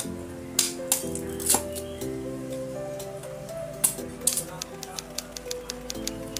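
Background music, over which a machete knocks into areca nut husks on a wooden block, a few sharp strikes followed by a quick run of light taps near the end.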